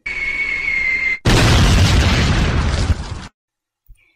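Sound effect of an incoming artillery shell: a high whistle, falling slightly in pitch, for about a second, then a loud explosion lasting about two seconds that cuts off abruptly.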